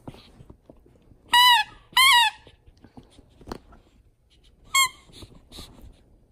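Squeaker inside a plush bat toy squeezed by a dog's bite: two loud squeaks about half a second apart, then a shorter one near the end, with soft chewing and rustling on bedding between them.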